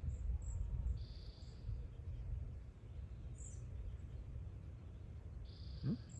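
Faint outdoor ambience with a steady low rumble, broken by two brief high-pitched chirps, one about a second in and one near the end, and a few fainter tiny peeps.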